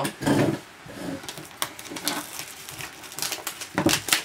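Cellophane shrink-wrap crackling and crinkling as it is torn off a sealed box of trading cards, a run of small irregular clicks with a louder rip near the end.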